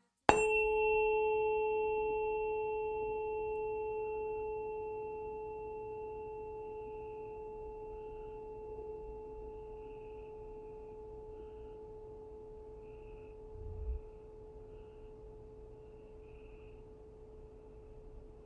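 Tuning fork struck once, ringing a single pure tone with a faint high overtone that slowly fades away. A soft low bump comes about fourteen seconds in.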